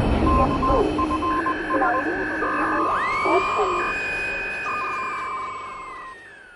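Produced intro sound effects: the tail of an explosion rumble dies away, then radio-style audio with short on-off beeps and long alternating two-pitch beeps over a garbled voice. About halfway through, a whistling tone rises steeply, holds, and slides down near the end as everything fades out.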